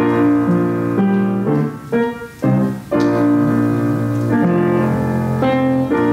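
Slow offertory music played on a keyboard, with full chords held about a second each and brief breaks between phrases.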